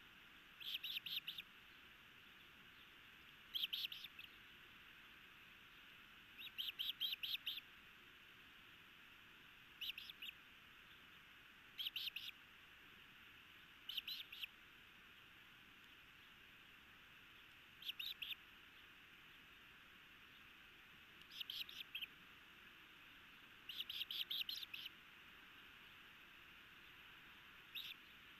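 Osprey calling at the nest: about ten short runs of rapid, high chirps, spaced a few seconds apart, over a faint steady hiss.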